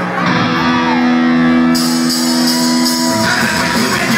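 Live punk rock band starting a song: an electric guitar chord rings out, held steady, and the full band comes in near the end.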